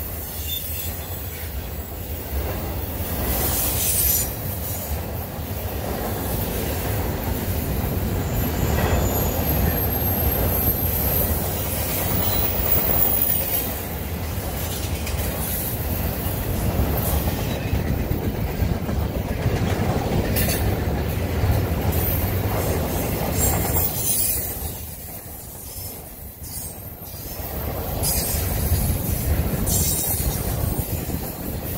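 Intermodal freight train of double-stack container cars and trailer cars rolling past at close range: a steady rumble and clatter of steel wheels on the rails, with thin high wheel squeals now and then. It eases briefly about three-quarters of the way through.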